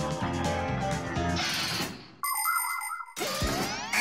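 Background music that stops about two seconds in, followed by a short electronic warbling tone and then a rising glide: cartoon sound effects.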